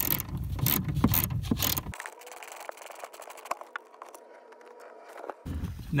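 Hand ratchet with a 9 mm socket clicking in quick runs as it backs out the speaker grille's screws. After about two seconds the clicking drops to a few faint ticks.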